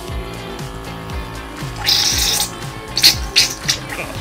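Background music over a stream of baked-bean sauce being forced out of a toothpaste tube's nozzle into a glass, with a hissing, sputtering spurt of air and sauce about two seconds in and a few short splats near the end.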